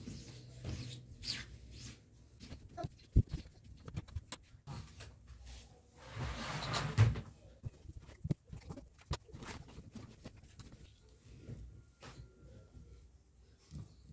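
Dry clothes being handled and folded on a wooden table: cloth rustling with scattered light knocks, and a longer, louder rustle about six seconds in.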